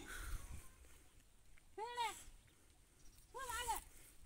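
A small cat meowing faintly twice: one short arched cry about two seconds in, and a second, two-humped cry near the end.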